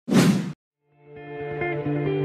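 A short whoosh sound effect lasting about half a second, then a brief silence, then soft background music fading in about a second in.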